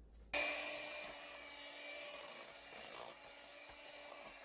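Electric hand mixer switching on about a third of a second in and then running steadily, its twin beaters whipping a pot of mashed potatoes to get the lumps out.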